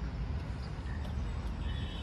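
Outdoor city ambience: a steady low rumble of wind on the microphone and distant traffic, with a few faint short chirps.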